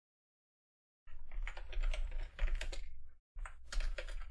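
Typing on a computer keyboard: a rapid run of key clicks with a low desk thump under them, starting about a second in, pausing briefly near three seconds, then going on. The sound starts and stops abruptly.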